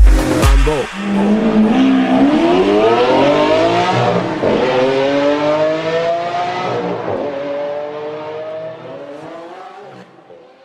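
The last heavy bass beats of a trap track stop about a second in, giving way to a sports-car engine accelerating hard, its pitch rising and dropping back at two gear changes. The engine fades out near the end.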